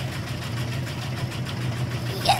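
Washing machine running near the end of its cycle: a steady low mechanical hum.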